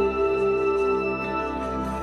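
Pan flute instrumental music: long held notes over a soft sustained backing.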